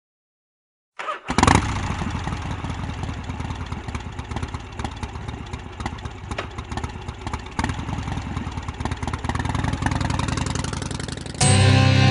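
A motorcycle engine starts about a second in and runs with a steady, pulsing rumble that swells slightly near the end. Just before the end, loud electric-guitar music comes in over it.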